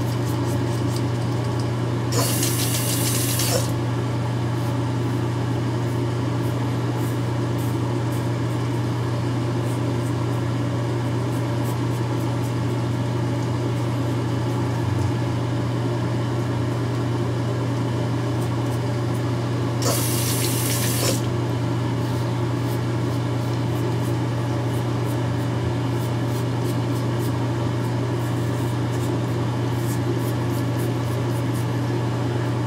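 Battery-powered Gillette five-blade razor buzzing steadily from its vibration motor as it is drawn over stubble. Twice, about two seconds in and about twenty seconds in, a tap runs for a second or so as the blade is rinsed.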